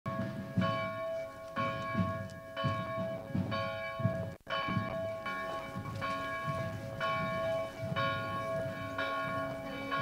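Church bell tolling, struck roughly once a second, each strike ringing on into the next, with a brief break a little before the middle.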